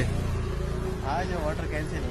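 Steady low rumble of road vehicles on a street, with a faint voice briefly about a second in.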